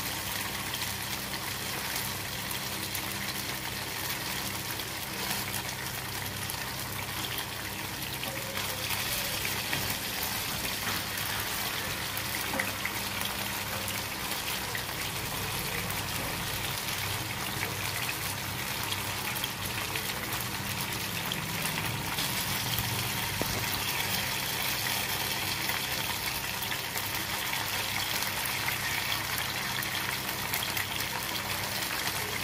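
Paneer cubes sizzling steadily as they shallow-fry in hot oil in a nonstick frying pan, the sizzle a little louder from about nine seconds in.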